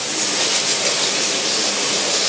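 Steady, loud hiss of static noise on the broadcast audio line, with no speech.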